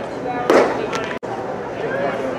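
A pitched baseball popping into the catcher's leather mitt about half a second in, one sharp loud smack, over a steady murmur of voices. Just after a second in, the sound cuts out for an instant.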